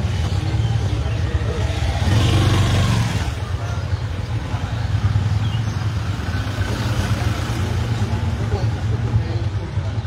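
A motor vehicle's engine running close by as a steady low hum, swelling louder for about a second two seconds in.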